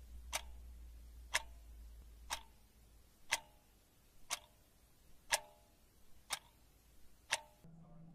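Analog wall clock ticking, one sharp tick each second, eight ticks in all.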